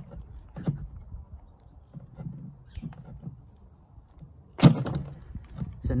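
Rubber inlet hose being twisted and pulled off the plastic barb of a small 12-volt diaphragm pump, with scattered handling clicks and rustles and one sharp knock near the end.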